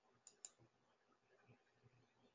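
Near silence with two faint, short clicks about a quarter and half a second in, made while the presentation is advanced to the next slide.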